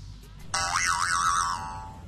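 Cartoon-style springy 'boing' sound effect: a ringing tone whose pitch wobbles up and down a few times, starting about half a second in and fading out within about a second.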